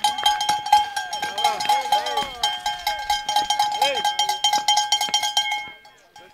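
Hand-held cowbells shaken rapidly and continuously, a dense clanging with a steady ring, while people shout encouragement over them. The ringing stops just before the end.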